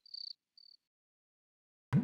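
Crickets chirping: two short high chirps in the first second, then dead silence. A sharp percussive knock near the very end starts the music.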